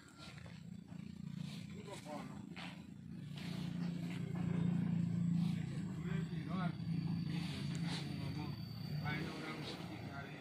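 A low, steady motor hum that swells to its loudest around the middle and then eases off again, with indistinct voices over it.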